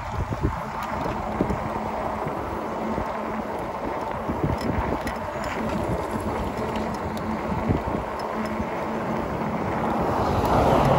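Wind buffeting the microphone and tyre rumble while an e-bike rides over cracked asphalt, with small knocks from the bumps and a faint steady hum underneath.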